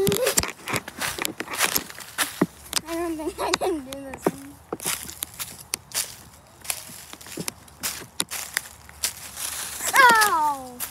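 Footsteps crunching and rustling through dry fallen leaves and twigs on a forest floor, an irregular run of crunches, broken by brief wordless voice sounds about three to four seconds in.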